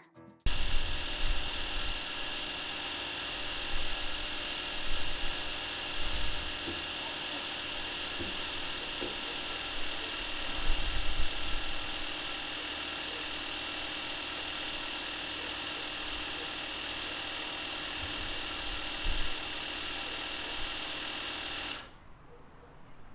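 Cordless portable tire inflator's electric compressor running steadily with a high-pitched buzz while pumping air into a car tire. It starts suddenly just after the beginning and cuts off abruptly near the end.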